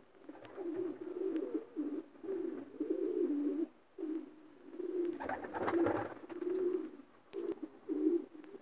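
Domestic racing pigeons cooing: a run of low, warbling coos in repeated phrases, with a louder, fuller burst about five seconds in.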